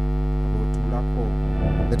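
Steady low electrical hum running through the church's sound system.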